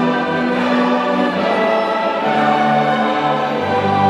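Mixed choir singing with a string orchestra in held, layered chords: a choral arrangement of an Italian folk rhyme (filastrocca). A low string note comes in near the end.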